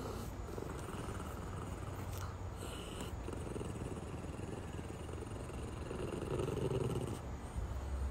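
A small dog growling low and steadily while holding a chew in its mouth, swelling louder near the end.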